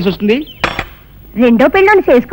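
A single short metallic clink of a spoon against a dessert cup, with a brief ringing, about two-thirds of a second in.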